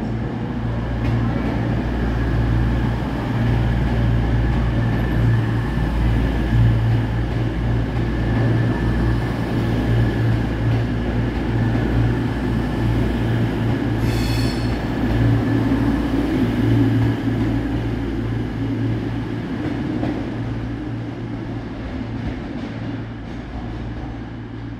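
Diesel train at a station platform, its engine running with a steady low drone. A brief high-pitched squeal comes about fourteen seconds in, and the sound eases off near the end.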